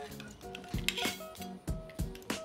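A table knife clicking and scraping against a littleneck clam's shell as it is prised open, with a few sharp clicks, the loudest about a second in and near the end. Soft background music runs underneath.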